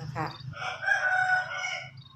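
A rooster crowing: one long held call starting about half a second in and fading out near the end.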